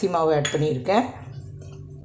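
Brief speech, then small stainless-steel spice cups clinking lightly as they are handled, over a low steady hum.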